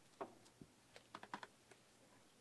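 Faint clicks and taps of books being handled on a library shelf: one tap, then a quick cluster of small clicks about a second in.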